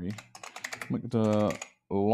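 Typing on a computer keyboard: a quick run of about eight keystrokes in the first second. Then a man's voice makes a drawn-out wordless sound, louder than the typing, and starts another near the end.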